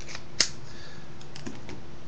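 A sharp click about half a second in, then a few lighter clicks and taps, as a knife in a hard plastic belt sheath is handled and set down on a wooden tabletop.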